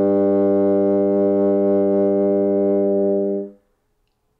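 Solo bassoon holding one long, steady low note that ends the piece, then releasing it about three and a half seconds in.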